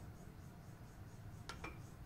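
Mostly quiet, with two faint quick clicks about one and a half seconds in: a metal spoon tapping the saucepan as a spoonful of butter is knocked off into cold olive oil.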